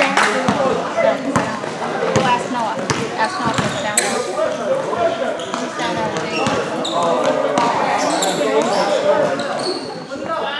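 A basketball bouncing on a gym floor in repeated sharp thuds during live play, under the voices of players and onlookers, all echoing in a large gymnasium.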